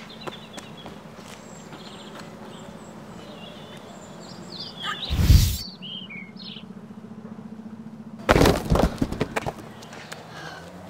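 Birds chirping over steady outdoor background noise with a low hum. About five seconds in comes a loud half-second burst of noise, and a little after eight seconds a rapid cluster of loud crashing impacts lasting about a second, matching a crack in the ground.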